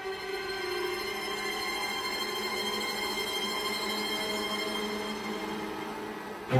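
Film score music: a sustained chord of many held tones that swells slightly and eases off near the end.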